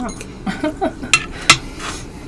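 Eating utensils clicking against a plate: a few short, sharp clicks, the loudest about one and a half seconds in.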